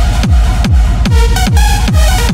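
Electronic dance track: a heavy kick drum, each hit falling in pitch, about two beats a second, under a synth melody.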